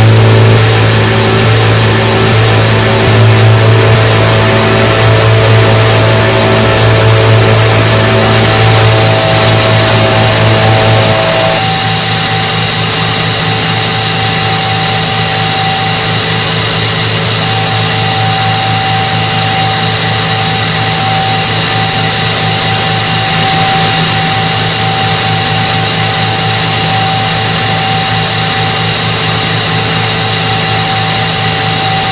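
Walinga Agri-Vac grain vacuum running at full capacity, a steady machine drone of its diesel engine and blower with several steady tones. A strong low hum drops away about eleven seconds in, leaving a steady higher whine.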